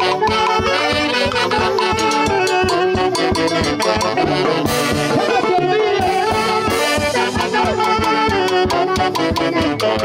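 Live saxophone band playing a dance tune, several saxophones in harmony over a steady drum beat.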